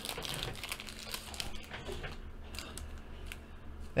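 Thin plastic penny sleeves crinkling faintly as they are handled and a trading card is slid into one, with scattered light ticks.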